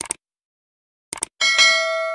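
Subscribe-button animation sound effect: two quick clicks at the start, a few more clicks about a second in, then a bell ding that rings on and slowly fades.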